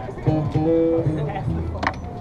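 Acoustic guitar played loosely between songs, a few held notes ringing, then a lower note, with a sharp click near the end.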